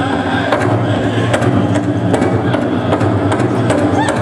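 Powwow drum group singing a buckskin contest song, the big drum struck in a steady beat under the singers' voices.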